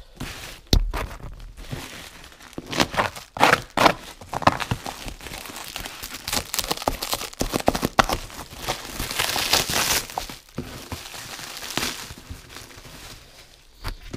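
Black plastic bag wrapping and packing tape on a parcel being torn and crumpled by hand, in a run of crackling rustles and rips. A heavy knock sounds about a second in.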